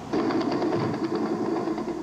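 Helicopter engine and rotor running, a steady mechanical drone with fast pulsing that starts abruptly right at the start.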